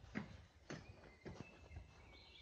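Faint footsteps at a walking pace, about two steps a second.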